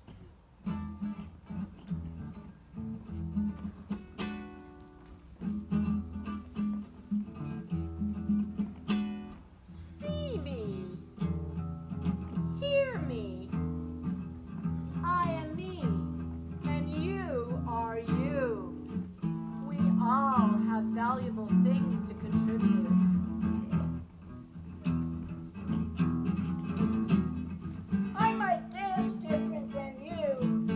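Acoustic guitar strummed live. From about ten seconds in, a voice joins, sliding up and down in pitch over the chords.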